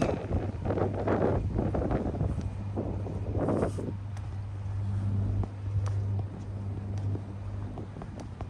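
Wind gusting on the microphone for the first four seconds, over a steady low engine hum that runs on after the gusts die down.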